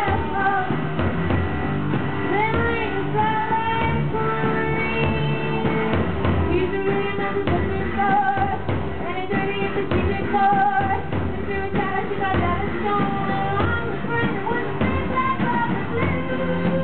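A woman singing live in wavering held notes with vibrato, accompanying herself on a bowed cello.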